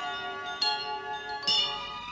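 A musical chime sting: bell-like chime tones struck in succession, about half a second in and again about a second and a half in, each note ringing on over the last.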